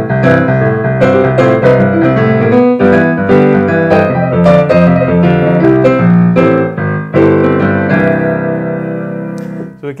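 Yamaha AvantGrand NU1X hybrid piano played with both hands in a boogie style, a busy left-hand bass under chords in the right. It ends on a chord about seven seconds in that is left to ring and fade for over two seconds.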